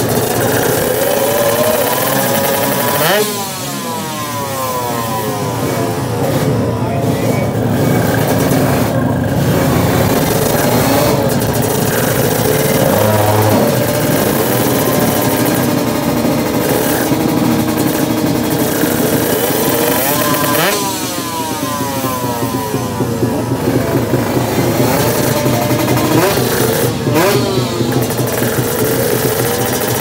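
Drag-racing motorcycle engines revving hard at the start line. About 3 seconds in and again about 21 seconds in, the engine pitch sweeps upward as a bike accelerates off the line through its revs.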